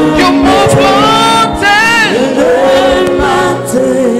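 A choir singing gospel music, several voices holding and sliding between sustained notes.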